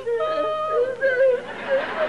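A woman's exaggerated, theatrical wailing cry: long held, wavering notes that break into sobs, any words lost in the crying.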